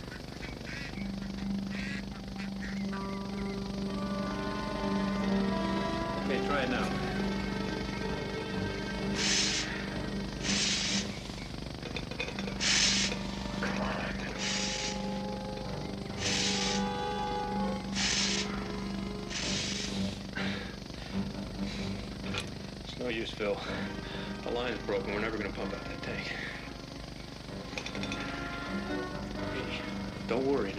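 Tense background music over a water pump working: a steady low hum with about seven regular hissing strokes, roughly one every one and a half to two seconds, in the middle of the stretch.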